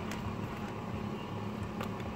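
Steady low hum inside a car cabin with the engine off, with two light clicks near the start and near the end, typical of the instrument-cluster display button being pressed.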